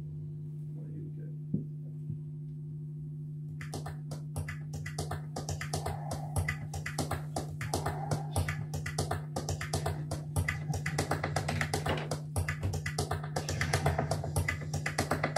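Live experimental electronic music: a steady low drone, joined about four seconds in by a rapid, dense stream of clicks and crackles that grows louder.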